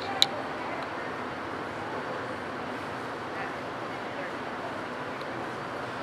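Indistinct background voices and steady room noise in an indoor horse-show arena. One sharp click sounds just after the start.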